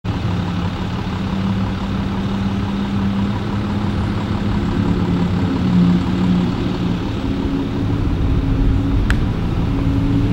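A steady low engine drone from a motor vehicle running, with a brief sharp click about nine seconds in.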